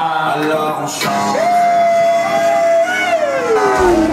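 Dance music over a sound system, with a man singing one long held note into a microphone that slides down in pitch near the end.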